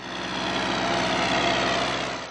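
Blue farm tractor's diesel engine running steadily as it pulls a plough through the soil. The sound comes in abruptly and grows a little louder over the first half second.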